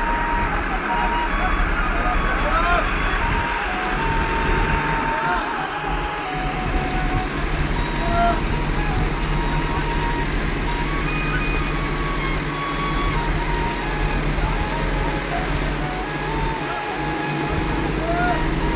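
Heavy diesel machinery, a wheeled excavator, running steadily with a constant low hum, while people talk and call out over it.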